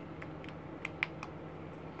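Several light, sharp clicks of hard plastic model-kit parts being handled and pushed together, as a tight-fitting styrene part is pressed into its locating holes.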